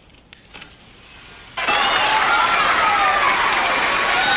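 A few faint clicks, then about one and a half seconds in a crowd suddenly breaks into cheering and applause, with many voices shouting.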